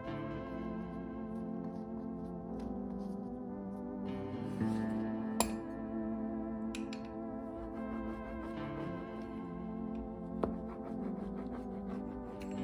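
Background instrumental music with sustained notes, with a few brief sharp clicks; the loudest is about five and a half seconds in.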